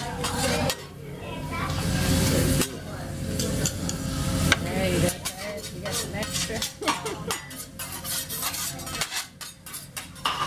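Metal spatulas clicking, tapping and scraping on a hibachi griddle in quick irregular strokes, with food sizzling.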